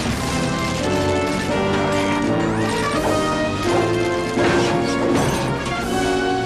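Dramatic cartoon action score with several crashing impact sound effects struck over it, the loudest right at the start, as in a brawl.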